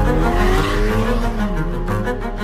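Ferrari Portofino's twin-turbo V8 revving, starting suddenly and loudly, rising in pitch over the first second and dropping back near the end, over orchestral music.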